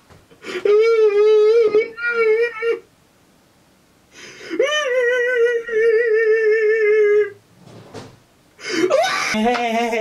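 A man's voice singing long, drawn-out "heyyy" notes with a wavering vibrato: two held notes in the first few seconds, and a lower note that starts near the end.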